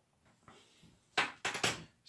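Handling noises: faint rustling, then a quick cluster of three or four short, sharp knocks a little past a second in as the glue spreader and prop are handled.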